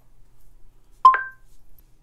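Google Home smart speaker's short two-note electronic chime about a second in, stepping up in pitch.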